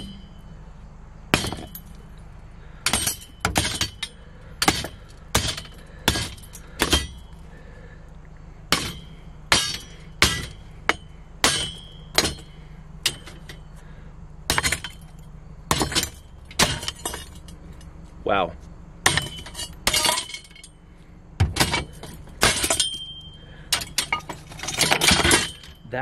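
Hammer blows smashing a ceramic sink, a run of sharp strikes about a second apart with clinking shards, the blows coming faster and closer together near the end.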